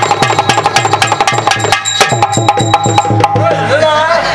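Live folk-drama dance accompaniment: fast, even strokes on tabla-style hand drums, about six a second, over a held note. It breaks off abruptly a little after three seconds in, and a voice begins near the end.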